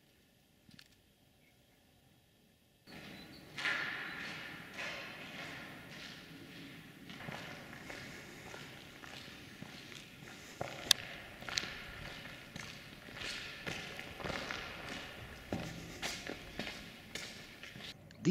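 Footsteps walking on a gritty concrete floor inside a large concrete box culvert, starting suddenly about three seconds in, with a steady noisy background and a few sharper clicks.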